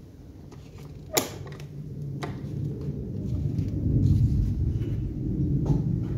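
Heavy old carved oak church door being opened: a sharp click of its ring-handle latch about a second in, a second click a second later, then a low creak as the door swings open.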